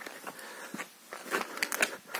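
Footsteps crunching over moss strewn with twigs and dry leaves: a handful of short, separate crunches, most of them in the second half.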